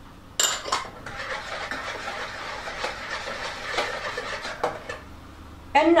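A utensil stirring cake batter in a mixing bowl: a steady scraping with small clinks against the bowl, starting about half a second in and stopping about five seconds in.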